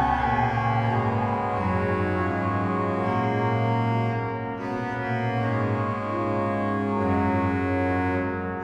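Church pipe organ playing slow sustained chords over low bass notes, the harmony shifting every second or two.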